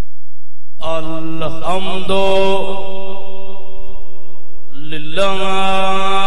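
A man's amplified voice chanting in long, held notes, starting about a second in, with a short break near five seconds before the next held phrase.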